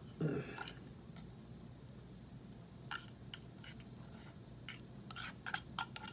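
Metal fork scraping and clicking against the inside of an opened tuna can as tuna is dug out, a few light clicks from about halfway in and more of them near the end.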